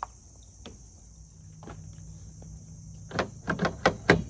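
Steady high-pitched chirring of insects in the background. Near the end come a cluster of sharp clicks and knocks, the loudest sounds here, from tools being handled against the car.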